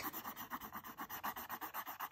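Graphite pencil shading on paper, scratching back and forth in quick, even strokes as an area is coloured in.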